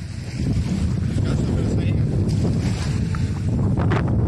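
Wind buffeting the microphone, a loud low rumble that grows stronger about half a second in, with the wash of surf behind it.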